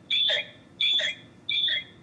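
Three short, high-pitched calls, evenly spaced about 0.7 s apart. Each is a held high note that drops away quickly, and the calls stop shortly before the end.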